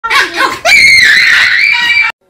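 A person's loud, high-pitched scream, held for over a second, after a few short laughing cries.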